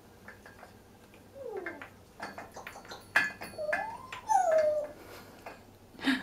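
Congo African grey parrot making soft whine-like calls: a short falling note, then a longer note that rises and falls, among small clicks and taps of it climbing on its rope and toys.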